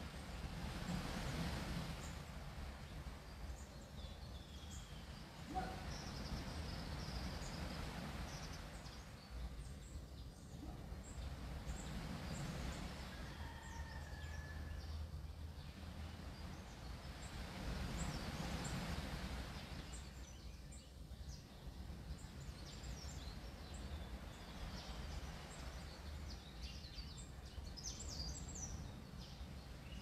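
Low background ambience with a hiss that swells and fades several times, and faint, scattered high bird chirps.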